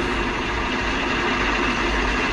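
An engine running steadily, a constant low hum with a faint steady tone over it.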